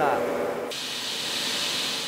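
Industrial diamond-tipped core drill boring into a block of soapstone, a steady hissing grind that comes in abruptly under a second in.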